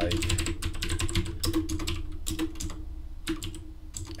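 Typing on a computer keyboard: a fast run of keystrokes for about two seconds, then slower scattered key presses with a short pause before the last few.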